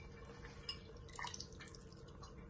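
Faint, scattered drips and small plops into the liquid in a stainless steel cooking pot as soaked rice is being added, with a few light ticks about a second in.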